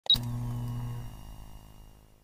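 Intro logo sting: a sudden hit with a brief high beep, then a low, steady humming tone that fades out over about two seconds.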